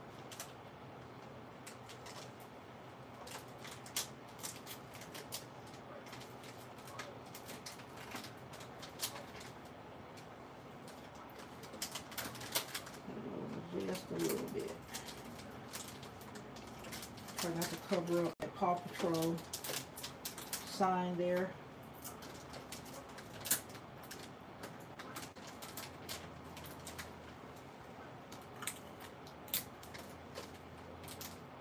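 Crinkling and clicking of plastic candy packets as they are handled and tucked into a gift basket, with irregular small crackles and taps. Around the middle come a few short, low voice-like sounds.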